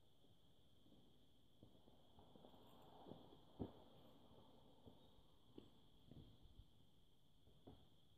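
Near silence: a faint steady high-pitched tone with a few faint small knocks and taps, the clearest about three and a half seconds in.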